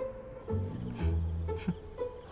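Background drama score: deep string notes over a held higher tone, with a new low note coming in about half a second in and another about a second in.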